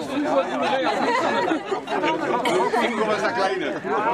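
Several people talking over one another in overlapping, lively conversation: crowd chatter.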